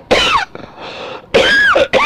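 A man coughs and clears his throat in short bursts, with a breath between. A brief voiced sound follows about a second and a half in.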